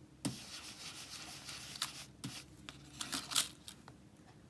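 Round ink-blending brush scrubbing ink through a plastic stencil onto card: a dry, bristly rubbing in short back-and-forth strokes, with a burst of harder strokes a little past three seconds in.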